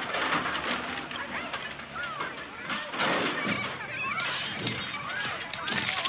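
Broken glass and debris clinking and falling in the aftermath of a crash, with many small sharp ticks and clinks and a louder burst of breaking about three seconds in.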